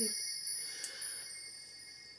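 A sung note ends, leaving a few faint high chime tones ringing and fading away. A small click comes a little under a second in.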